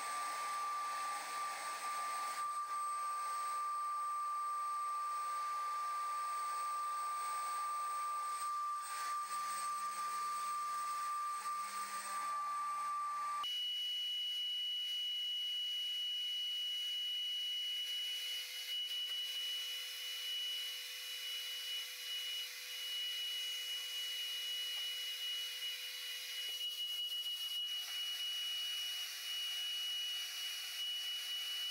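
HV3500 HVLP turbine paint sprayer running, a steady whine over air hiss, spraying Plasti Dip liquid wrap. The whine jumps abruptly to a higher pitch about halfway through.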